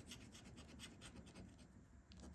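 Faint, quick scratching strokes as the latex scratch-off coating of a lottery ticket is rubbed away over the play spots.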